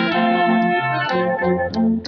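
A brass band playing, with a tuba giving a bass line of short repeated notes under a held higher brass line.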